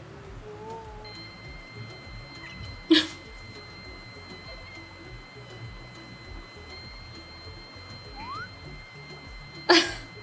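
Background music with a steady low beat and faint held high tones, broken by two short loud sounds, one about three seconds in and one near the end.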